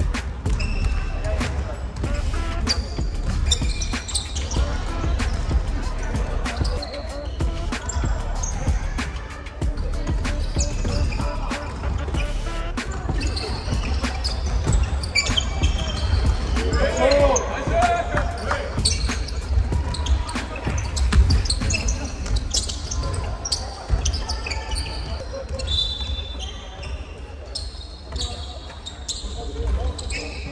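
Basketball game sounds on a hardwood court: the ball bouncing on the floor, many short knocks and high sneaker squeaks, and players' scattered voices, all echoing in a large gymnasium. A loud shout rings out about seventeen seconds in.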